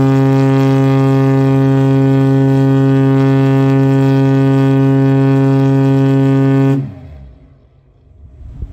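Mast-mounted ship's whistle (air horn) of the M.V. Oceanex Sanderling sounding one long, deep, steady blast that cuts off about seven seconds in.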